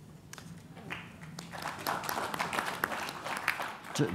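Audience applauding in a large hall, the clapping swelling about a second in and carrying on steadily.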